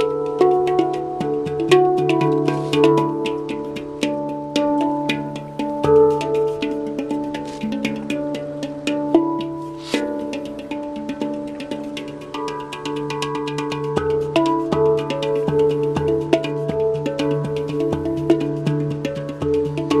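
Steel handpan played by hand: a quick stream of struck, ringing notes over a low note that keeps sounding underneath.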